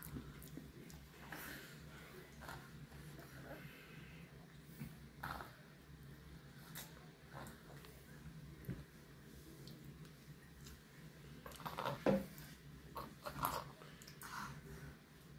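A toddler eating at a table: soft, scattered mouth and chewing noises over a low steady room hum, with a short cluster of louder sounds from the child near the end.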